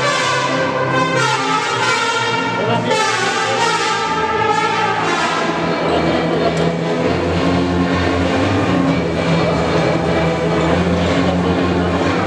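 Brass band music: trumpets and trombones playing held notes.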